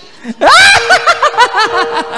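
A singer laughing loudly into a microphone through the PA: a rising 'ah' about half a second in, then a quick run of 'ha-ha-ha' about five a second.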